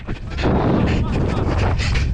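Heavy rumbling wind buffeting on a body-worn camera's microphone as the player sprints with the ball, crossed by rapid thuds from his running strides. It rises sharply about half a second in and holds loud.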